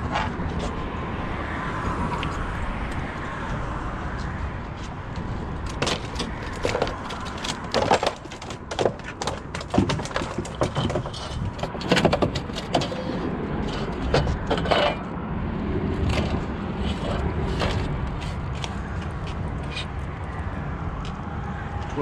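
Scattered clicks, scrapes and knocks of a sheepshead and fishing tackle being handled on a fiberglass skiff deck, thickest in the middle, over a steady low rumble.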